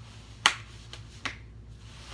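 A sharp snap-like click about half a second in, then three fainter clicks spaced roughly a third to half a second apart.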